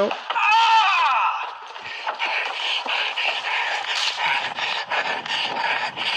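A brief high-pitched shout, then the noisy, jostled sound of someone running with a handheld camera. Footfalls and handling noise come in a quick, even rhythm of about three a second.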